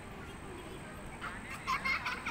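Children's high-pitched voices, short shouts or laughing calls that break in about halfway through and get louder near the end, over a low outdoor background hiss.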